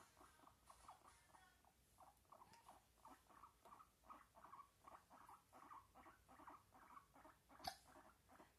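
Guinea pig making faint, short squeaks in quick succession, several a second. A sharp click near the end.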